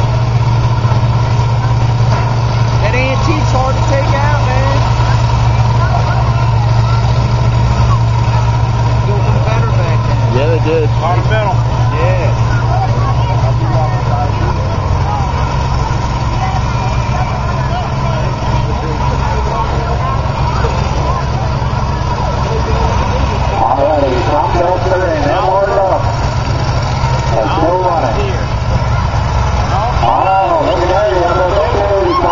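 Engines of several combine harvesters running with a steady, low note that drops lower about halfway through. Crowd voices are heard throughout.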